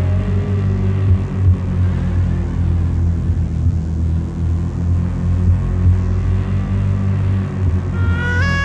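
Live industrial electronic music: a loud, dense low drone that flickers unsteadily, with a faint wash of noise above it and no clear melody or voice.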